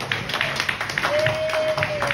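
Audience clapping in welcome, with one long held note sounding over the applause in the second half.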